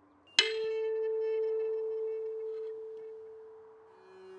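A metal tuning fork struck once, then ringing one steady, pure tone that slowly fades.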